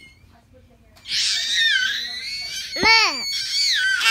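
A young child's voice squealing, very high-pitched and sliding up and down, starting about a second in after a short quiet, with a brief rising-and-falling "ooh" about three seconds in.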